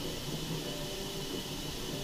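Steady rush of warm water running from the tap into a bathtub.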